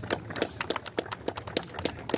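Scattered applause from a small group of people: quick, irregular claps.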